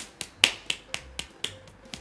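One person clapping lightly, quick soft claps about four a second, evenly spaced.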